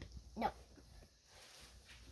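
A child's single short spoken 'no', then quiet room tone.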